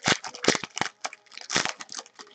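Foil trading-card pack wrapper crinkling and crackling as hands tear it open and peel it back, in a quick run of crackles with the loudest bursts near the start and about one and a half seconds in.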